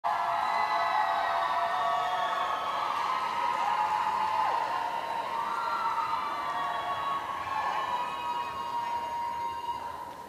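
Audience cheering and shouting, many high-pitched voices at once, dying down steadily toward the end.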